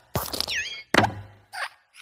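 Cartoon sound effects of a hopping Luxo desk lamp in a logo animation: plops and thumps as it lands, a short squeaky glide about half a second in, and the heaviest thump about a second in.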